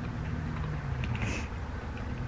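Broccoli being chewed, with one brief crackly crunch about a second in, over a steady low hum in the room.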